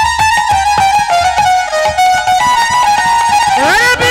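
Instrumental kirtan music: a melody instrument plays held notes that step up and down over rapid drum strokes, with a rising slide near the end.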